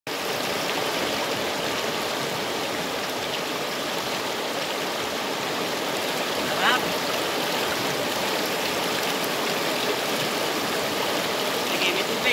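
Shallow rocky river rushing steadily through rapids. A brief rising call cuts through a little past the middle.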